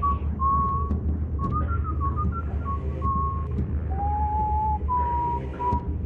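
A person whistling a short tune, the notes stepping up and down with small slides between them and a longer, lower held note about four seconds in, over a steady low hum.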